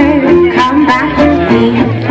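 A live jazz band playing an upbeat swing tune, with bass and guitar.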